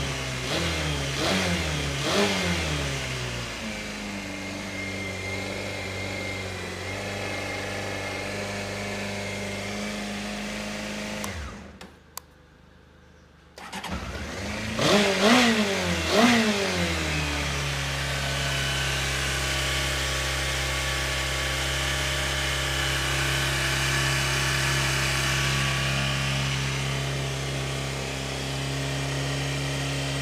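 Honda CBR600F (PC25) inline-four engine blipped a few times, each rev falling back, then idling steadily. After a short break near the middle it is revved again and settles into a steady, slightly higher idle, the idle speed having just been adjusted.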